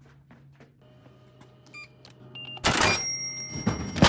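A drinks vending machine gives short electronic beeps as the purchase goes through. About two-thirds in, the drink drops into the pickup slot with a loud clatter that rings on for about a second.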